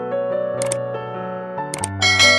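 Soft piano background music with two short click sound effects from a subscribe-button animation: the first about two-thirds of a second in, the second near the end.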